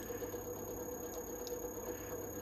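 Wood lathe running with a quiet, steady hum. Two faint clicks a little past the middle, from buttons being pressed on the ornamental-turning device's control box.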